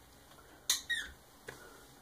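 A short high-pitched squeak that falls in pitch, about two-thirds of a second in, then a faint click about halfway through.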